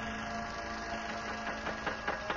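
A steady electrical hum made of several held tones, joined near the end by scattered sharp clicks and crackles.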